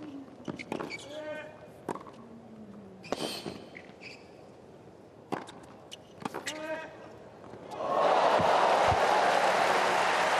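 Tennis rally: a run of sharp racquet-on-ball strikes, a few with short voices alongside. About eight seconds in, the crowd breaks into loud cheering and applause as the point ends.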